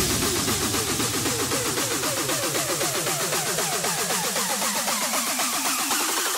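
Electronic music: a synth sound of quick falling chirps that repeat several times a second, its lowest pitch sinking slightly and then rising near the end.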